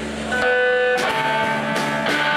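Live rock band music led by sustained electric guitar chords. The sound swells with a fuller chord about half a second in, and the notes change again about a second in.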